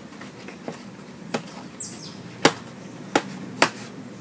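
A series of sharp clicks and taps, about six, from a photo frame with glass and backing being handled and pressed down on a cutting mat. The loudest comes about halfway through.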